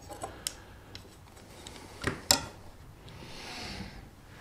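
Light clicks and knocks of a charger's crocodile clamp and a cotton-wool-wrapped bolt being handled on a wooden workbench, the sharpest click about two seconds in, then a brief soft rustle near the end.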